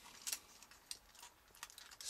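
Faint clicks and taps of a Brave Exkaiser Green Raker robot toy's plastic parts being handled and shifted during transformation, with a few scattered sharp ticks.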